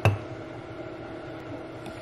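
A single sharp knock at the very start, a ceramic wax-warmer base knocking against the countertop as it is handled, followed by a steady low hum in the room.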